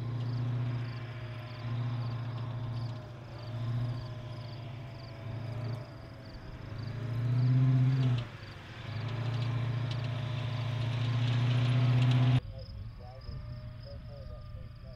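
Tracked armored robotic combat vehicle driving over grass, its engine humming and rising and falling, loudest about eight seconds in and again near the end. It cuts off suddenly about twelve seconds in, leaving crickets chirping in a steady pulsing rhythm.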